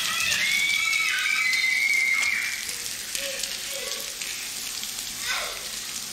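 Shower spray hissing steadily on a tiled floor, with a girl's high-pitched squeal held for the first two seconds or so.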